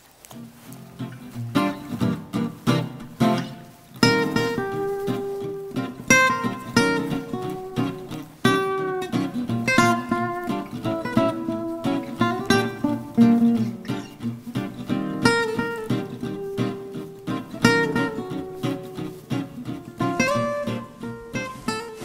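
Background music: an acoustic guitar playing a plucked, picked melody with a steady rhythm.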